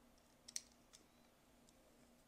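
A few faint clicks from a pair of eyeglasses being handled and put on, the clearest about half a second in, over near-silent room tone.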